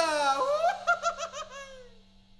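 A person laughing: a sudden falling then rising cry followed by a quick run of short 'ha' pulses that die away.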